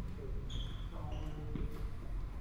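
Indistinct voices of people talking some way off, over a steady low rumble, with two short high tones about half a second and a second in.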